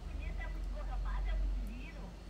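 A caller's voice on a telephone line, faint and thin, with a low steady hum underneath.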